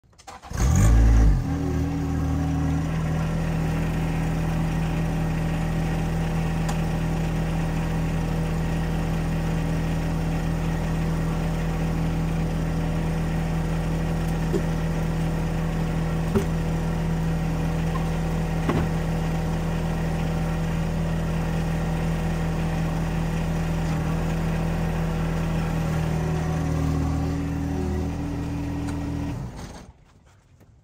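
A John Deere compact tractor's diesel engine running steadily, louder for a moment about a second in, then shutting off just before the end. A few light knocks come midway as logs are rolled off the loader forks.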